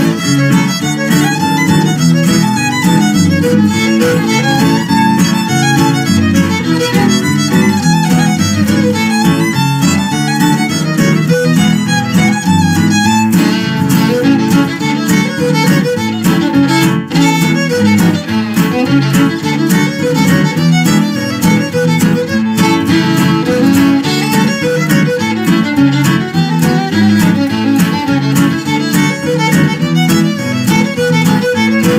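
Fiddle playing an old-time contest tune, backed by acoustic guitar accompaniment.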